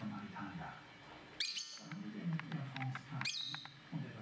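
Lovebird calling: two sharp, loud calls about a second and a half apart, with a few short, softer chirps between them, over a low background murmur.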